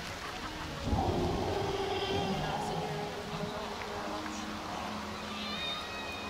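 Recorded dinosaur roar played from the loudspeaker of an animatronic dinosaur model: a low growling rumble that starts suddenly about a second in and eases off over the next couple of seconds.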